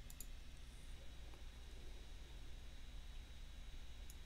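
A computer mouse clicking, two quick clicks close together about a fifth of a second in, over faint room tone with a steady hum.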